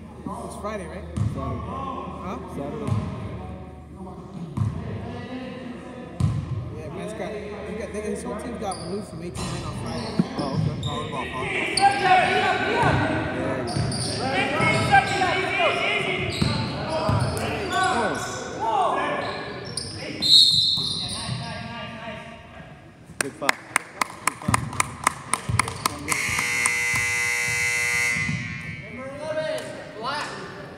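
Basketball game in a gym: the ball dribbled on the hardwood with players' indistinct voices, then a quick run of ticks and the scoreboard horn sounding for about three seconds near the end as the game clock runs out.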